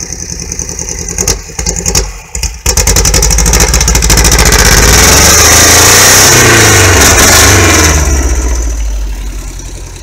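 VW Beetle's air-cooled flat-four engine running through a tall open exhaust stack: idling, dipping briefly about two seconds in, then revved up sharply, held high for a few seconds and let fall back toward idle near the end.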